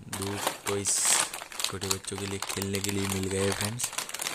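Crinkling and rustling of a foil-lined plastic snack pouch as it is handled and shaken out, loudest about a second in.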